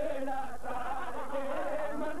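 A man's voice chanting a melodic recitation, holding long wavering notes.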